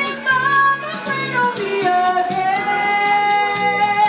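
A woman singing into a handheld microphone over a karaoke backing track. About two seconds in she holds one long note to the end.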